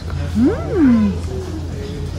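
A single drawn-out vocal exclamation whose pitch slides up and then back down over about a second, over a steady low hum.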